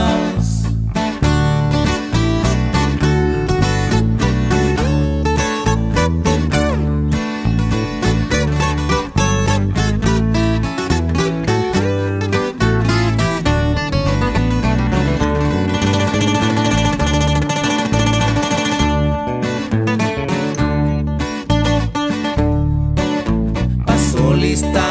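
Instrumental break of a corrido: acoustic guitars pick a fast melody over a bass line, with no singing.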